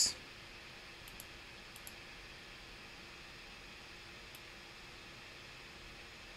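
Quiet room hiss with a few faint clicks from a computer pointing device: two quick pairs early on and a single click past four seconds, as the on-screen pen tool is picked and used.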